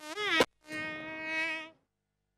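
Nadaswaram reed pipe of South Indian temple music: a buzzy bending note, a sharp drum stroke about half a second in, then one steady held note that cuts off abruptly.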